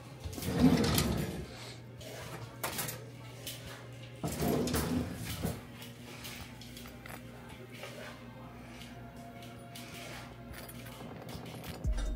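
Kitchen handling sounds, scattered clinks and knocks of utensils and dishes during cooking, with louder clusters near the start and about four seconds in. Faint background music and a steady low hum run underneath.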